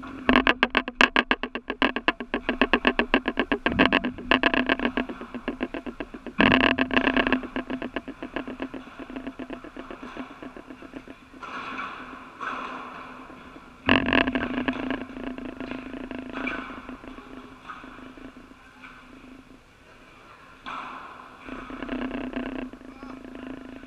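Padel play echoing in a large indoor hall: sharp strikes of the ball against rackets and walls. Each is followed by a rapid rattling pulse, about ten a second, that dies away over a few seconds.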